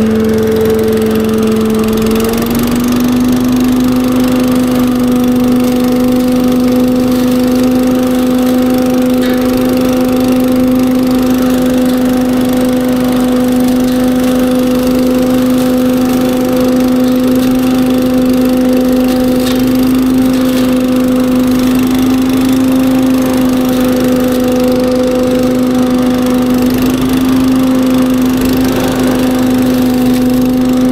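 Billy Goat KV601SP walk-behind leaf vacuum running steadily under load as it is pushed over cut dry grass, vacuuming it up; its steady hum rises a little in pitch about two seconds in and then holds.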